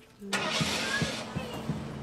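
Old pickup truck's engine starting: a sudden burst of noise as it cranks and catches, then running with a string of dull knocks about three a second.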